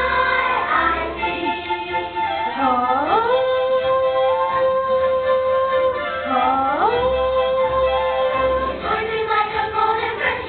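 A children's choir singing, with two long held notes, each reached by an upward slide: the first about three seconds in, the second about seven seconds in.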